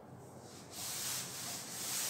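A cloth rubbing chalk off a blackboard: a few wiping strokes, starting about half a second in.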